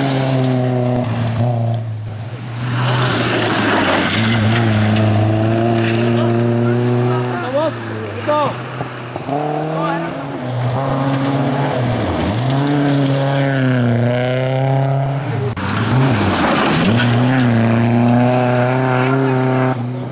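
Rally cars driven hard on a gravel special stage: engines held at high revs, the pitch falling and climbing again at several gear changes and lifts, with gravel noise from the tyres underneath.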